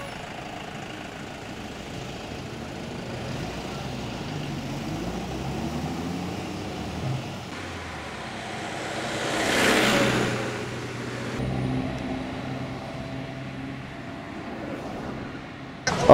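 Road traffic: vehicle engines running with a steady low hum, and one vehicle passing close by about ten seconds in, its sound rising and then fading away.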